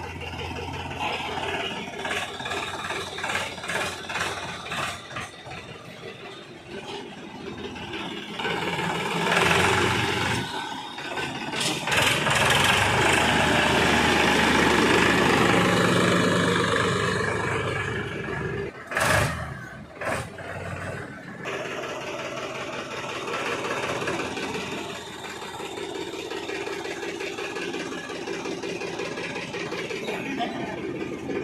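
Powertrac Euro 50 tractor's diesel engine running, growing louder for several seconds in the middle as it is driven close by, then settling back to a steadier, quieter run. Two sharp knocks come about a second apart near the two-thirds mark.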